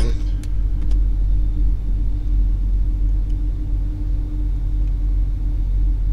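Steady low rumble with a constant hum over it, and a couple of faint keyboard clicks about half a second in.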